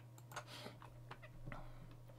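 A few faint, sharp clicks and small handling noises from a computer mouse and desk, over a steady low electrical hum.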